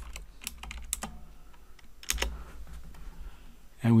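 Computer keyboard keystrokes typing a search term: a quick run of about six keystrokes in the first second, then a single louder click about two seconds in.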